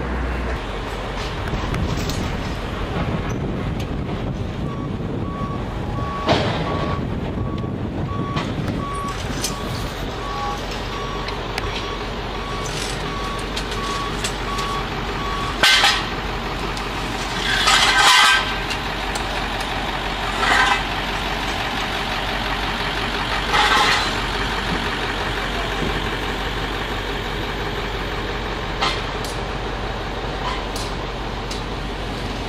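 Street traffic and engine noise, with a vehicle's reversing alarm beeping steadily about once a second for about ten seconds, then a few short, louder bursts of noise.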